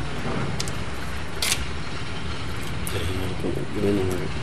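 Steady low rumble of outdoor background noise, with a short sharp click about one and a half seconds in and a person's voice briefly near the end.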